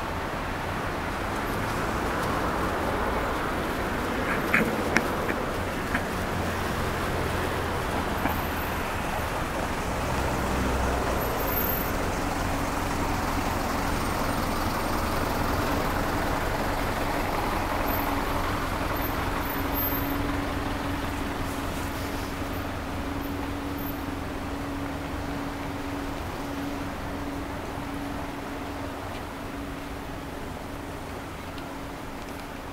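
City street ambience: a steady wash of traffic noise, with a few sharp clicks several seconds in and a low steady hum that sets in about midway and holds.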